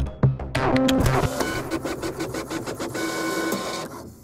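Closing theme music with a beat, turning about a second in into rapid mechanical clicking with a steady whirring tone, which fades near the end.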